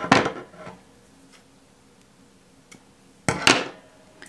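Fishing-line clippers being handled with faint small clicks, then a louder short snip about three seconds in as they cut the tag end of the line off a freshly tied knot.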